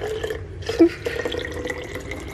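Grape juice poured from one plastic bottle into another: liquid trickling and dripping, with a short bump just under a second in.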